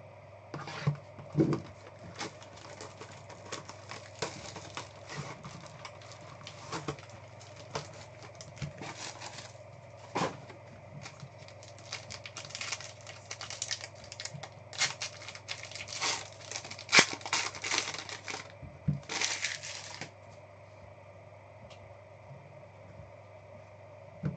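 Hands opening a trading-card box and tearing into its gold foil pack: a run of crinkles, rips and small clicks of wrapper and card stock, with a longer rip near the end. It stops about 20 seconds in.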